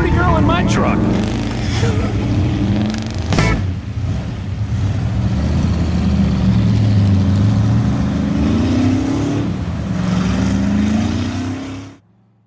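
Lifted SUV mud truck's engine revving as it drives across a dirt field, its pitch climbing and falling several times with the throttle. Voices are heard briefly near the start.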